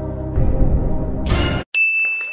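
Low background music, then a short rush of noise that cuts off into a brief silence. Near the end comes a bright ding sound effect, which rings on as one clear tone.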